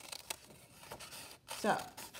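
Scissors cutting through folded paper, with a few soft snips and rustles of the paper.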